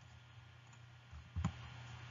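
Quiet room tone with a faint low steady hum and a single short click about one and a half seconds in.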